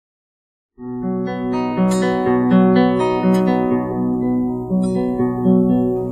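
Solo acoustic guitar picking a folk-song introduction, starting about a second in, with a low note repeating steadily under the plucked melody.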